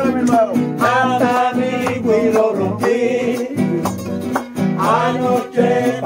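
Two acoustic guitars strumming and picking a Puerto Rican folk song, with a man singing over them in phrases.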